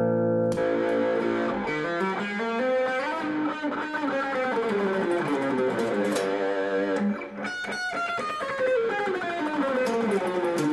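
Guild DeArmond Starfire hollowbody electric guitar played through a small solid-state amp: a chord rings out, then single-note melodic lines are picked across the neck, with a brief run of clicky, scratchy picking about seven and a half seconds in.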